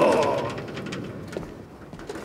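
A man's pained cry, loud at first, falling in pitch and fading away within about half a second.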